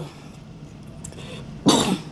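A man gives a single short cough into his fist, clearing his throat, near the end of an otherwise quiet stretch.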